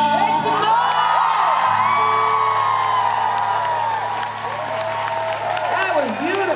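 A live band's final chord held and ringing out at the end of a pop song, while the concert crowd cheers and whoops over it.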